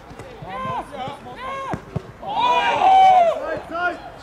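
Men's voices shouting across a football pitch during play, with one loud, drawn-out call about two and a half seconds in. A single sharp knock comes just before it, about two seconds in.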